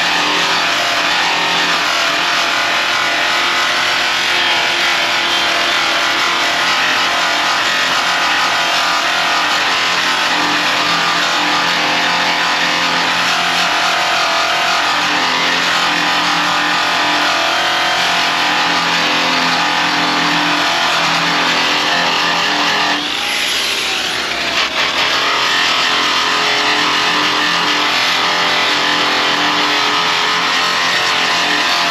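Power buffer spinning a pleated buffing wheel against aluminum diamond plate, a steady whirring grind while polishing the aluminum. About two-thirds in, the sound briefly dips with a falling whine, then comes back steady.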